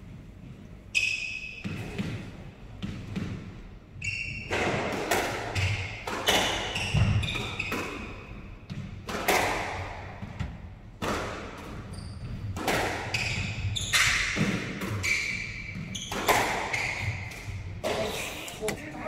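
Squash rally starting about a second in: the ball cracks off rackets and the court walls in a quick, irregular run of sharp hits with a short echo after each, with brief squeaks from the players' shoes on the wooden floor.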